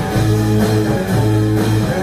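Live rock band playing: electric guitar with held, steady notes over a drum kit.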